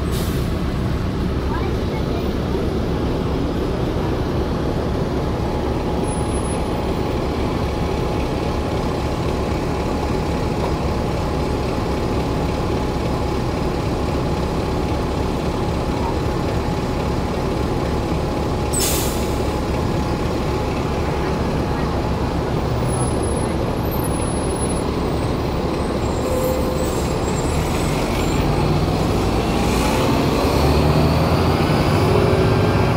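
Diesel engine of a 2008 New Flyer transit bus heard from inside the bus: a steady low rumble at idle, with a short sharp hiss of air a little over halfway through. Near the end the engine note rises and grows louder as the bus pulls away.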